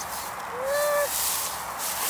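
Tall grass swishing against legs and shoes as someone wades through it on foot, with a brief rising hum-like vocal sound about half a second in.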